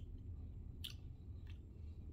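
Faint mouth sounds of a person savouring a sip of coffee: a few soft lip and tongue clicks, one just before a second in and another about half a second later, over a low steady room hum.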